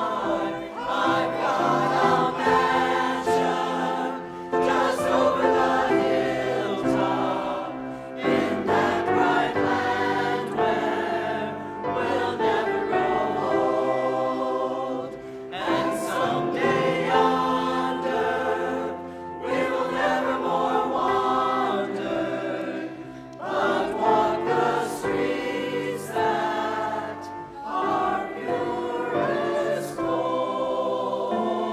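Church choir singing a gospel song with piano accompaniment, in phrases of about four seconds each.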